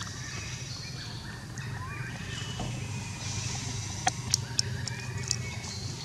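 Outdoor ambience of birds calling and chirping over a steady low hum, with a few sharp clicks about four to five seconds in.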